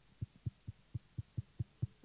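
A run of short, muffled low thumps, evenly spaced at about four or five a second.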